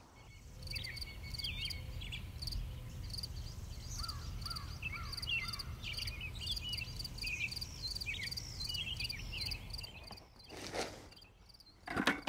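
Small garden birds singing: many short rising and falling chirps over a steady, pulsing high trill, with a low rumble underneath. A brief louder noise comes near the end.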